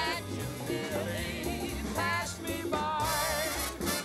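Music: singers performing a Christmas song medley, their voices held in long notes with vibrato over a backing band.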